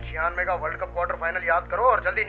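Speech only: a man talking, over a steady low hum.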